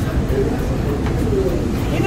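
Indistinct low voices over a steady low rumble of room noise.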